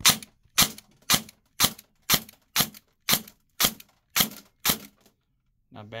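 VFC MP7 airsoft electric gun (AEG) firing ten single shots on semi-auto, about two a second, each a short sharp snap. Each pull gives one shot, the semi-auto burst fault cured by fixing a damaged rocker piece behind the selector.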